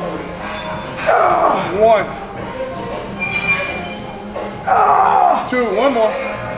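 A man grunting with effort twice while pushing out hack squat reps, each strained grunt about a second long, the first about a second in and the second near the end, over background music.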